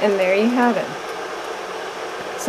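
A woman's voice briefly at the start, then a steady, even background hiss like a fan running in a small room.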